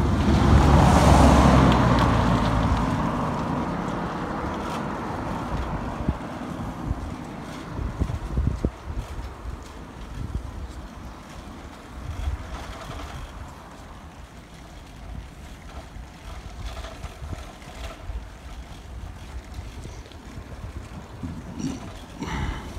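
A motor vehicle passing close by, its engine and tyre sound loudest about a second in and fading over several seconds. After it, wind rumbles on the microphone of a moving bicycle.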